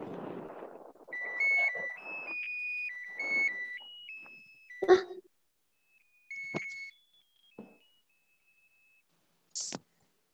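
A simple electronic melody of single pure beeping notes, ringtone-like, stepping up and down in pitch for about four seconds, then a fainter, slower run of notes. Rustling noise sits under the first notes, and there are sharp knocks about five and six and a half seconds in.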